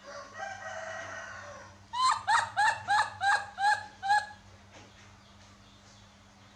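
Infant macaque crying: a fainter wavering call, then a run of seven short, loud, high-pitched cries, each rising and falling in pitch, about three a second.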